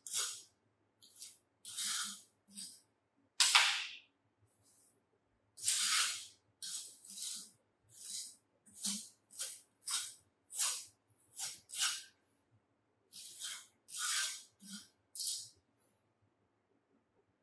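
Hand trowel scraping and smoothing the rammed moulding sand on the top of a cope box: about twenty short, gritty strokes at irregular spacing.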